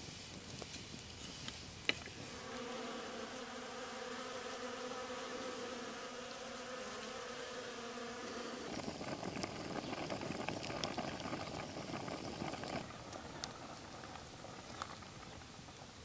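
A flying insect buzzing with a steady hum for about six seconds, then a louder, rougher, noisier stretch for about four seconds; a few sharp ticks are scattered through.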